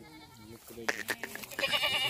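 A goat bleating: one long quavering bleat starting about halfway through and still going at the end.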